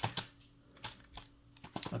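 Foil trading-card packs handled as a stack while being counted: a handful of light, irregular clicks and taps.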